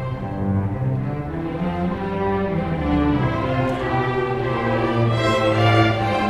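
High school string orchestra of violins, violas, cellos and double basses playing bowed, held notes, the low strings moving beneath the upper parts at a steady level.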